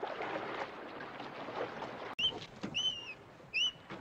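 Sea and ship ambience, then, after an abrupt cut about halfway through, a bird's short whistled chirps: three quick notes that arch up and down, repeating at intervals.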